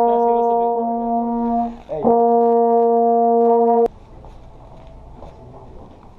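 Trombones holding a long, loud unison brass note twice, with a brief break for breath between, cut off suddenly about four seconds in. After that, only quieter room noise with faint voices.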